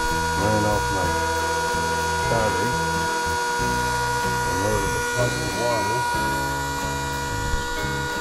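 Small electric inline water pump with brass hose fittings running with a constant, steady whine, pumping water from carried containers into an RV trailer's fresh-water tank.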